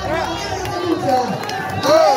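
Several people's voices talking and calling out just after a band's song ends, with the last low note of the music dying away in the first second.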